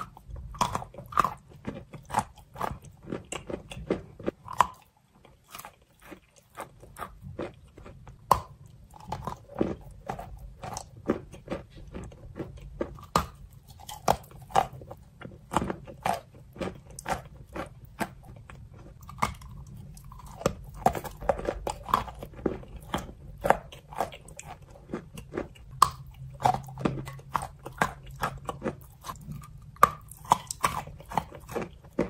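Close-miked chewing and crunching of wet, pasty chalk: a dense run of crisp crunches and clicks from the teeth, with a brief lull about five seconds in.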